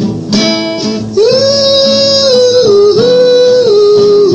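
Strummed acoustic guitar with a male voice singing long, held notes that begin about a second in and step down in pitch toward the end: an acoustic reggae demo.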